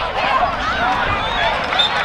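Many voices shouting and cheering over one another, with no clear words: football players and spectators yelling.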